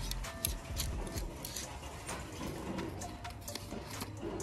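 Clothes hangers clicking against each other and against the clothing rack as shirts are pushed along the rail one after another, many irregular clicks, with music playing in the background.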